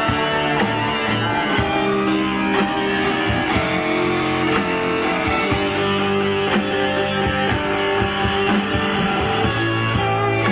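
Rock band recording with guitars to the fore, over bass and drums with a steady beat.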